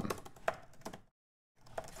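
Typing on a computer keyboard: a quick run of keystrokes through the first second, a short pause, then a few more keystrokes near the end.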